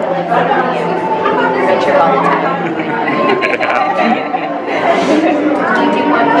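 Chatter of several people talking at once, with no single voice standing out.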